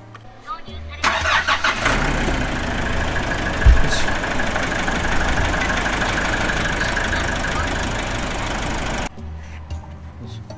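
Nissan NV350 Caravan's clean-diesel engine starting about a second in and idling steadily straight after an oil and filter change, run briefly to build oil pressure with the fresh oil. The sound cuts off abruptly near the end.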